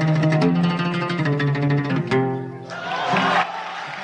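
Oud playing a taqsim with rapid plucked notes. The sound thins out briefly just after halfway, then the playing picks up again.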